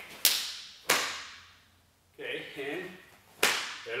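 Cotton taekwondo uniform sleeves snapping with fast strikes: three sharp cracks, two close together near the start and one shortly before the end.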